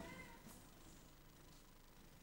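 Near silence: room tone in a pause, with a faint, brief pitched sound right at the start.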